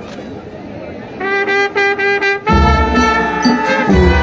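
Marching band brass of trombones and trumpets: after a quieter first second, three short repeated notes sound, then the full band comes in loud with a held chord and a deep low end, cutting off near the end.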